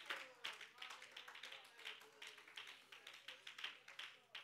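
Near silence in a church sanctuary, with faint, scattered hand claps from the congregation that thin out towards the end.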